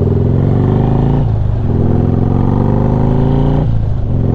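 Harley-Davidson Street Glide's V-twin engine pulling hard under acceleration, its pitch climbing. It drops back for an upshift about a second in and climbs again, with a second shift near the end.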